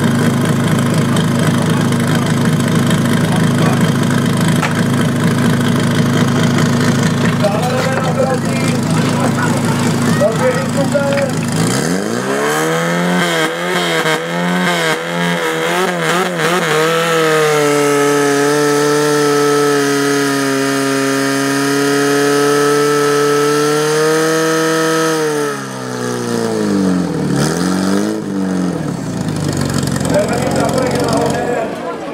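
Portable fire-sport pump engine idling steadily, then revved hard about twelve seconds in, its pitch climbing unevenly before holding at high revs for about eight seconds while pumping water to the hoses. Near the end the revs drop, wobble and rise again.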